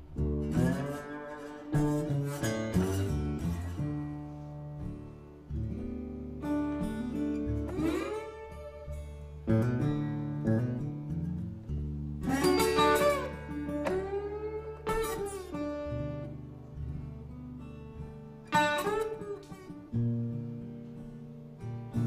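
Acoustic blues guitar playing an instrumental break: a steady picked bass line under treble notes, several of which glide up in pitch.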